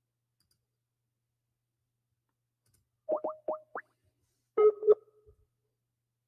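Electronic call-app tones from an outgoing internet call to a caller: a quick run of four short rising blips, then two short beeps about a second and a half later.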